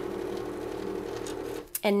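Cricut Expression cutting machine's motors running steadily as the blade head is driven across to a new spot on the mat, a level motor whir that stops shortly before the end.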